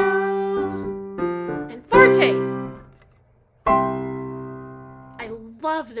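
Digital piano playing held chords, then a short break and a final chord struck about three and a half seconds in that rings and fades away. A voice starts talking near the end.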